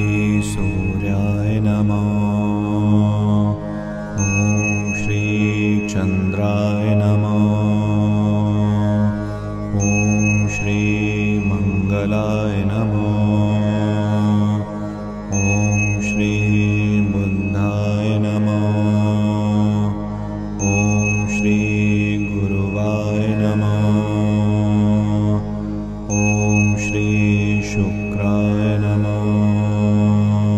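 A devotional Sanskrit mantra chanted to music over a steady low drone. A high ringing tone recurs about every five and a half seconds.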